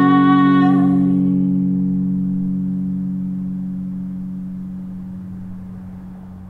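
Final chord on a hollow-body guitar ringing out and slowly dying away, with the last sung note trailing off in the first second.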